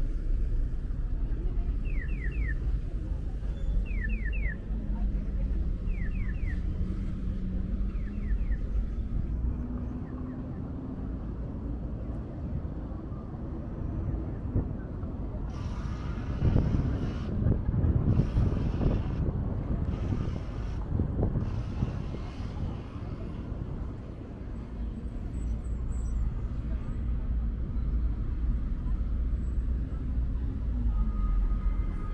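City street ambience at a busy crosswalk: steady traffic rumble with people passing on foot. For the first several seconds a short triple chirp repeats about every two seconds. About halfway through comes a louder stretch of rushing noise lasting several seconds.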